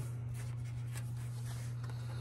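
A steady low hum with faint rustling of tarot cards being handled at the table.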